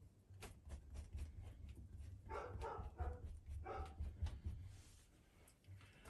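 Faint scraping and light taps of a paintbrush laying thick oil paint on canvas, with two short pitched sounds a little past the middle.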